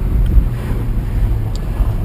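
BMW M6's V10 engine running steadily at low revs while the car rolls slowly, a low drone heard from inside the cabin.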